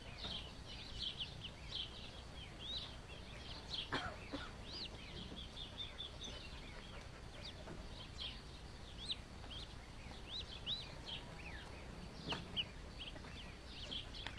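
Duckling peeping: a steady run of short, high-pitched peeps, several a second. Two brief knocks break in, about four seconds in and near the end.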